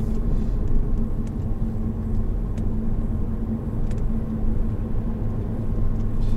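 Honda Odyssey RB3 minivan, with a 2.4-litre four-cylinder engine, driving at a steady speed, heard from inside the cabin: an even low rumble of tyre and engine noise with a steady hum.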